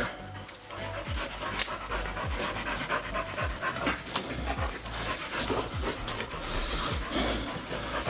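A dog panting close by in a steady rhythm, over background music.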